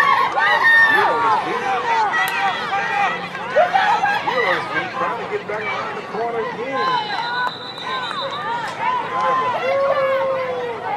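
Many spectators shouting and calling out over one another in the stands and along the sideline, a loud babble of voices with long rising and falling calls.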